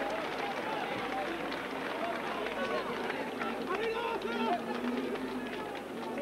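Football stadium crowd: many voices shouting and calling over one another at an even level.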